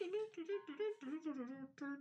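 A voice humming a tune in short, stepped notes.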